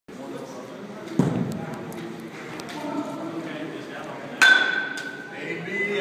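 A metal baseball bat strikes a ball with a sharp crack and a ringing ping that fades over about a second, past the middle. A duller thud comes about a second in.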